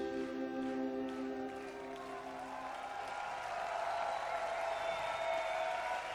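A live rock band's final chords ring out and fade over the first two or three seconds. Then the audience's applause and cheering build up, with whistles.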